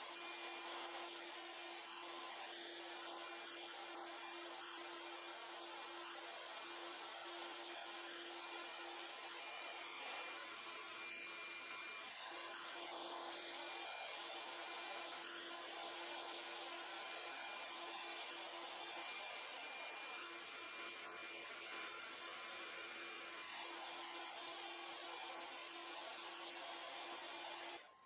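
BaByliss Big Hair rotating hot air brush running: a steady, faint airy hiss from its fan with a low hum beneath it.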